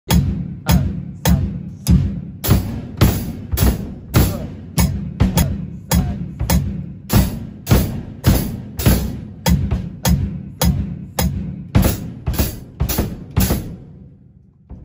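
Drum kits played together in a steady beat of about two strokes a second, bass drum and cymbal sounding on the strokes, stopping near the end.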